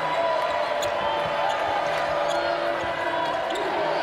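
A basketball being dribbled on a hardwood court, repeated sharp bounces over the steady noise of an arena crowd.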